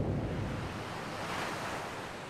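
Tail of a cinematic logo sound effect: a deep rumble dies away while a rushing, hissing noise grows brighter, the whole slowly getting quieter.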